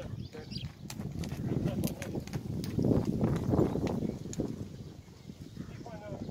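Pony cantering on a sand arena: dull hoofbeats with sharper clicks, loudest in the middle of the stretch.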